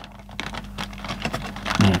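Small, scattered clicks and light scrapes of a calculator's circuit board being handled and pushed back onto its edge connector.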